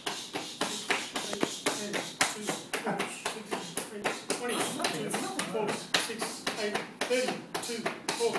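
Rapid series of bare-fist punches landing on a person's torso through a cotton karate gi, about four to five sharp slaps a second.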